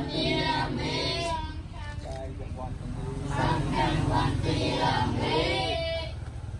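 Young novice Buddhist monks chanting homage verses together in a sing-song recitation, over a steady low rumble.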